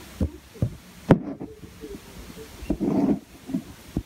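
A few irregular knocks and bumps at a pet rabbit's wire cage, the sharpest about a second in, with a short rustle about three seconds in.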